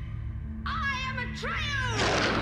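A loud, wavering cry that falls in pitch, starting about half a second in and followed near the end by a second cry that rises and then falls, over a low steady drone of film score.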